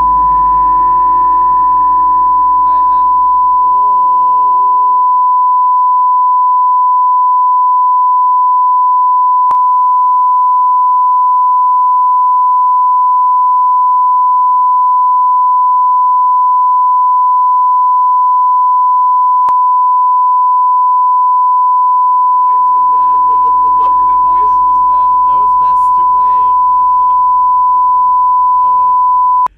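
Censor bleep: one loud, steady, unbroken beep tone laid over the talk. Faint voices and laughter show through beneath it for the first few seconds and again near the end.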